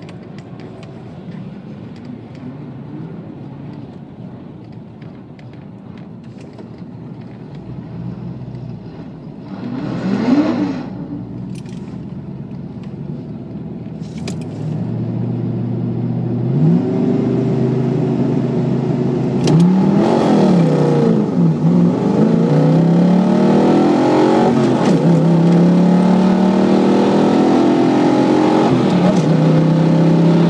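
Mercury Capri RS 5.0's V8 engine heard from inside the car. It idles low and steady, blips once briefly about a third of the way in, then from a little past halfway runs louder with the revs rising and falling several times.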